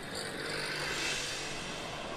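Steady background noise with a faint low hum, and no distinct events.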